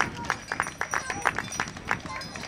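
Spectators applauding, with crisp, irregular handclaps close by at about five a second.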